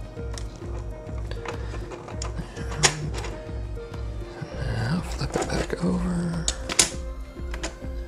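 Background music with a steady beat, over the small clicks and knocks of plastic LEGO bricks being handled and pressed together on a table, two sharper clicks standing out about three seconds in and near seven seconds.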